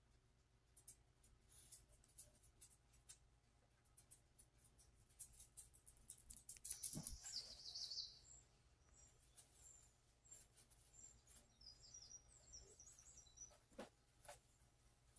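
Near silence, with faint clicks and scrapes of a silicone spatula on an electric griddle plate as pancakes are lifted off. A brief louder scrape comes about halfway through, and faint short high chirps come near the end.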